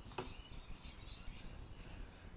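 Quiet background with faint, scattered bird chirps and a single short click about a fifth of a second in.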